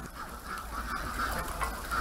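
A large flock of domestic white ducks quacking, many calls overlapping.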